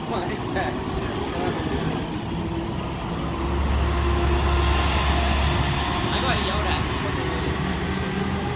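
Diesel motor coach driving past close by, its low engine rumble building to its loudest about four seconds in as it passes, then fading as it pulls away.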